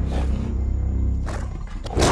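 Deep, sustained trailer-music drone under two short growling roars from a great ape, one at the start and one just past halfway.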